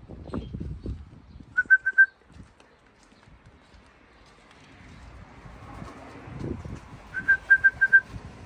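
A person whistling to call a racing pigeon down off a roof and into the loft: two quick runs of short, same-pitched whistle notes, four about one and a half seconds in and about six more near the end.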